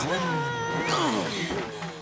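Cartoon character voices straining and grunting with effort, without words, one voice rising sharply in pitch about a second in.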